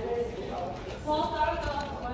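Mostly speech: a fainter voice in the second half over a steady low hum, with no clear other sound.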